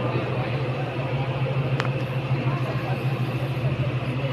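Sports-hall room noise: a steady low hum under a general murmur, with one sharp knock about two seconds in.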